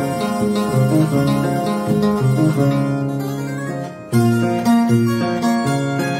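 Andean harp (arpa) playing a slow huayno, with a plucked melody over low bass notes. The playing dips briefly just before four seconds in, then resumes strongly.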